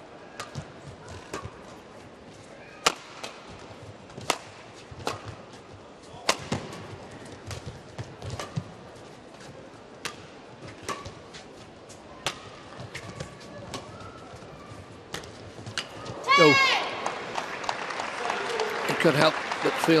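Badminton rally: rackets striking the shuttlecock in sharp, irregular hits roughly every second over a low arena hubbub. About sixteen seconds in the rally ends with a loud shout, followed by crowd cheering and applause as the point is won.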